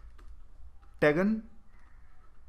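Faint clicks and taps of a stylus writing on a digital drawing tablet, over a low steady electrical hum; a man's voice speaks one short syllable about a second in.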